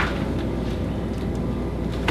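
Steady low hum of room noise with no distinct event.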